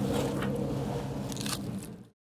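Crunching and scraping as a hand tool works into the carcass of a large totoaba, over a steady low hum of the ship's engine; the sound fades out near the end.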